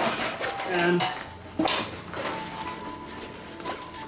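Nylon backpack shoulder straps being pulled out and handled: fabric rustling and rubbing, with sharp clicks of the strap hardware at the start and again about a second and a half in.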